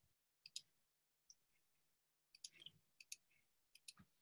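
Near silence broken by faint, scattered clicks in small groups, from a computer being operated to start sharing the screen.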